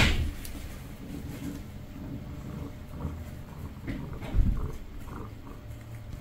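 Handling noise from a fabric pet carrier while a cat inside is stroked: a sharp knock right at the start, a few small bumps and rustles, and a heavier low thump about four and a half seconds in.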